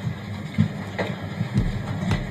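Steady low rumble of room noise in a conference room, with a few scattered knocks and bumps.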